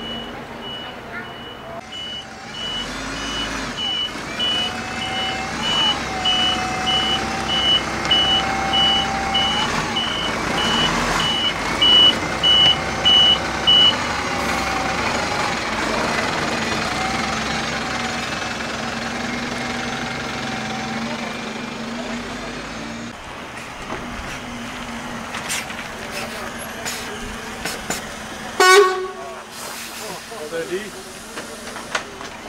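Iveco city bus reversing slowly: its reversing alarm beeps about twice a second over the steady diesel engine. The beeps grow louder as the bus backs closer, then stop about fourteen seconds in. Near the end a short, loud pneumatic burst comes as the bus stops and its doors open.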